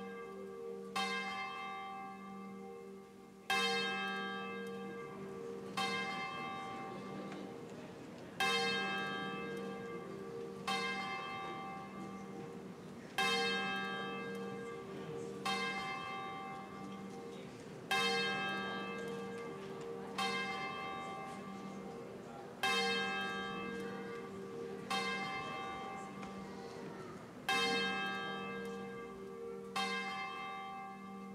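A church bell tolling slowly and evenly, about one stroke every two and a half seconds, the same note each time, each stroke ringing on as the next is struck. It is the bell rung to call the congregation to worship at the start of the service.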